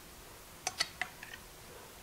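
A metal serving utensil clinking against a ceramic plate: three quick sharp clinks, then two fainter ones.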